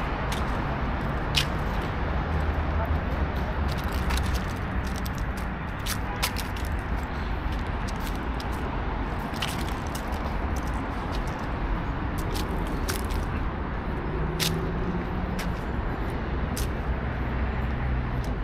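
City street ambience: steady traffic noise with a low rumble from the avenue, and scattered sharp clicks and crackles throughout.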